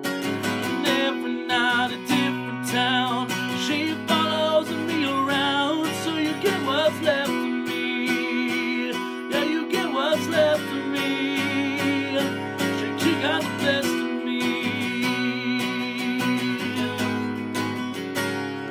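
Acoustic guitar strummed steadily, with a man singing over it in long held notes that waver.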